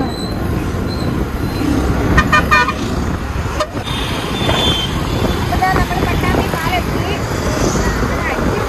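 Road traffic heard from a moving two-wheeler, with a steady low rumble of wind and engine. A vehicle horn gives a quick run of short beeps about two seconds in.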